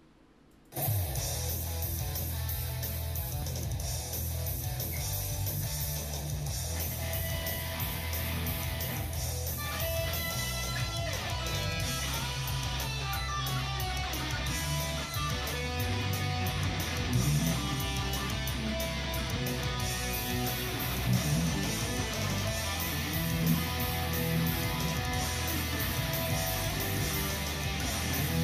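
Schecter Apocalypse C-1 FR electric guitar with passive pickups, played through an amplifier. It starts suddenly about a second in and carries on with strummed chords and picked lines.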